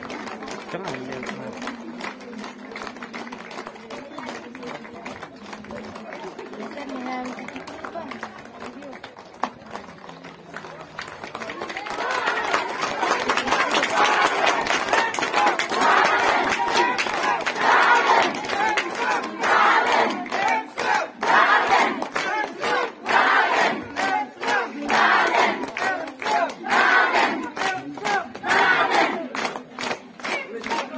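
A large crowd murmuring, then from about twelve seconds in shouting loudly in a steady rhythm of about one burst a second, with hand-clapping.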